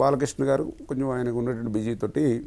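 A man speaking Telugu in conversation, with some drawn-out vowels.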